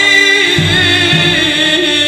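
String orchestra with folk lutes performing, a voice holding a long wavering note over sustained strings, with a low pulsing beat underneath.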